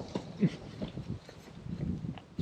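Faint scuffling and shuffling of people roughhousing: a scatter of short, soft low knocks and rustles with no steady sound.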